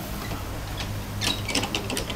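Kiddie carousel running: a steady low mechanical hum, with a scatter of clicks and knocks from the turning ride in the second half.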